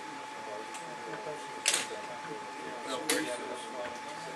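Two short, crisp handling sounds at a fly-tying bench, about one and a half and three seconds in, as the thread is finished off on the fly. Under them run a steady high-pitched electrical hum and faint low murmuring.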